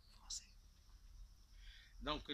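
Near silence: faint room tone in a pause between speech, with one brief soft hiss about a third of a second in.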